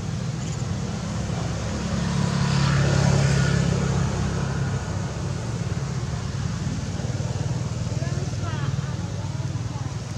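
A steady low motor-vehicle engine hum, swelling louder between about two and four seconds in, with a few brief high squeaks about eight and a half seconds in.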